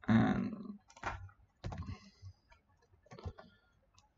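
A louder thump at the start, then a few scattered computer keyboard keystrokes and mouse clicks.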